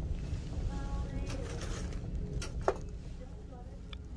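Shop room tone: a steady low hum with faint distant voices, and one sharp click about two and a half seconds in.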